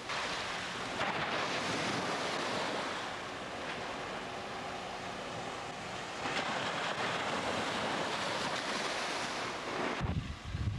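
Sea surf washing through the shallows: a steady rush of water, with louder surges about a second in and again after about six seconds.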